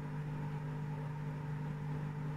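A steady, even electrical or mechanical hum, a low droning tone with fainter overtones, unchanging throughout.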